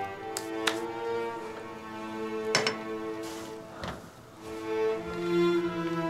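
Background music of bowed strings, violin and cello, holding slow, sustained notes that change every second or two, with a few short clicks over it.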